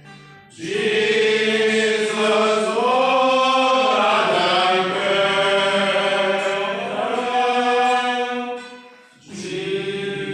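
A group of men singing a Christmas hymn together, one long phrase of drawn-out notes, with a short break for breath near the end before the next line begins.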